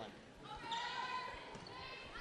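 Volleyball rally in a gymnasium: faint thumps of the ball being played, with faint voices of players and spectators in the hall.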